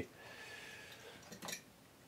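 Faint room tone: a steady low hiss in a pause between speech, with a slight soft sound about one and a half seconds in.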